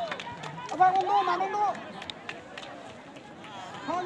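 Voices shouting during a football match, several loud calls overlapping about a second in, then quieter, with more shouts starting near the end.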